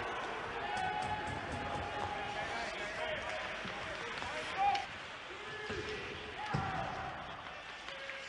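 Ice hockey game sound: sticks and puck knocking and skates on the ice, with voices calling; the loudest knock comes a little before the midpoint, another about two thirds of the way in.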